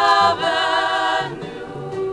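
A vocal group from a 1976 vinyl jazz album sings a held chord with vibrato over band accompaniment. The voices stop a little after a second in, leaving the band playing more softly, with a bass line moving underneath.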